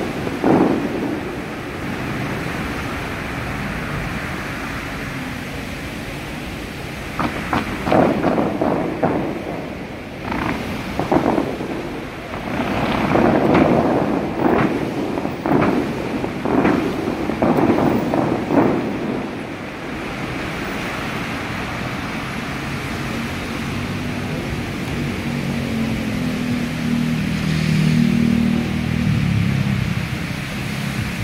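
Water jets of the Bellagio fountains shooting up and spraying into the lake: a steady rushing hiss that surges in a string of bursts through the middle stretch.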